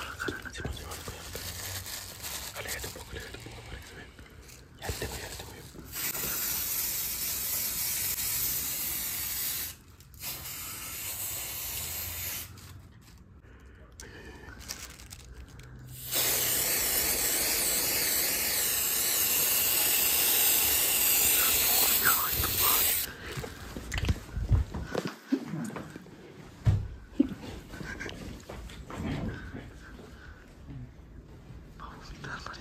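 Aerosol hair-colour spray can hissing as it is sprayed onto hair. There are two long bursts, about four seconds and then about seven seconds, with shorter spurts between.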